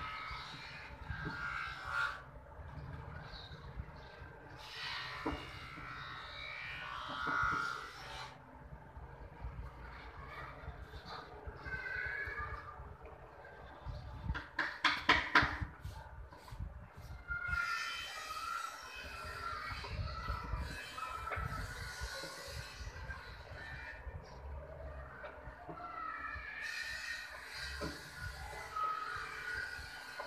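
Background music, with a quick run of about half a dozen sharp knocks halfway through as carved wooden pieces are struck into place on a wooden mandir cabinet.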